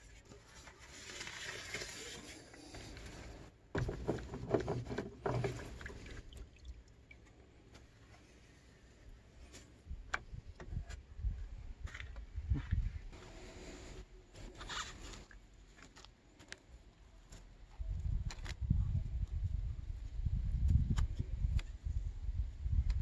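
Scrapes, clicks and handling noise from hands working on a diesel fuel filter housing and cartridge, with a hissing stretch in the first few seconds and low rumbling from near the end.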